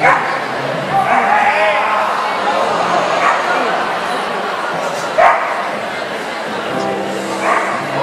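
A dog barking several times over the general murmur of a crowd in an indoor arena, during an agility run.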